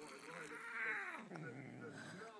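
A domestic cat yowling: two drawn-out calls that rise and fall in pitch, the first sliding down low just past the middle.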